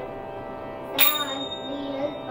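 Small brass hand cymbals (talam) struck together once about a second in, leaving a bright high ringing tone, over steady held musical tones in the background.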